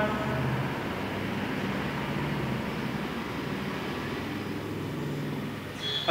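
Steady background rumble and hiss, with faint low droning tones that fade in and out.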